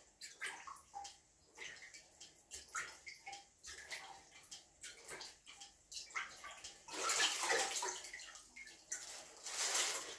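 Plunger being worked in a blocked toilet bowl full of water: repeated short splashes and sloshing, with two louder surges of water, about seven seconds in and just before the end.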